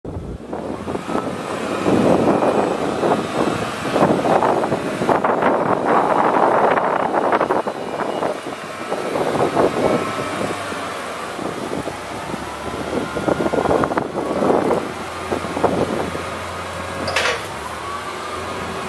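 Yale Veracitor 60VX propane forklift engine running and repeatedly revving in swells while the hydraulic mast is raised to full height, settling to a steadier hum between revs. A brief high squeal sounds near the end.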